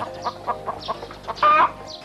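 A run of short animal calls, then one louder, longer call about one and a half seconds in.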